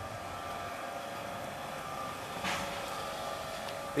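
Steady outdoor background noise with a faint hum, and a brief scuff about two and a half seconds in.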